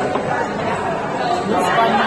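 Indistinct chatter of many voices in a busy restaurant dining room, steady and unbroken.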